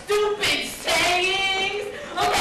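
A high voice singing briefly: a short held note, then a longer one that steps down in pitch partway through.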